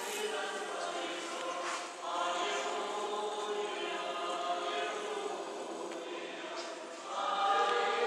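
A choir singing slowly in long held notes, with a new phrase swelling in about two seconds in and another near the end.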